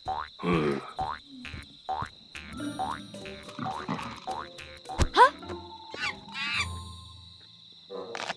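Cartoon jungle soundscape: a run of short croaks and animal calls, several rising in pitch, over a steady high tone, with one louder sharp call about five seconds in.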